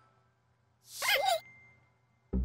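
Short cartoon vocal sound effect from an animated logo sting: a breathy, voice-like sound with a wavering pitch, about half a second long, starting about a second in, with a faint thin tone lingering after it.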